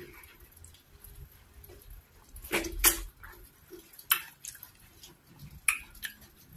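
Close-miked eating sounds of ogbono soup and cocoyam fufu eaten by hand: scattered wet, sticky smacks and clicks, the loudest cluster about halfway through.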